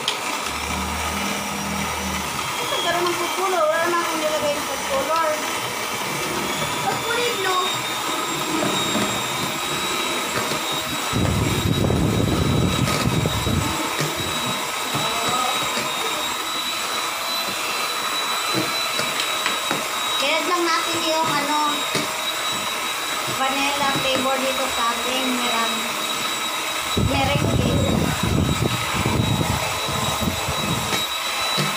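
Electric hand mixer running steadily with a high whine, its beaters whipping a white foamy meringue mixture in a stainless steel bowl.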